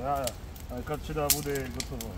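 Men talking, with sharp crackling clicks from a burning pile of green brush. The loudest crack comes about halfway through.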